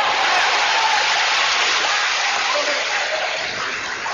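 A large audience applauding and cheering, a dense wash of clapping with shouting voices in it that slowly eases off toward the end.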